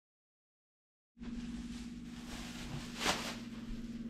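Dead silence for about the first second, then quiet indoor room tone with a steady low electrical hum, and a brief soft noise about three seconds in.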